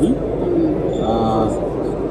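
A man's voice making a held, steady hesitation sound, an 'uhh' or 'hmm', about halfway through, over the steady murmur of a busy hall.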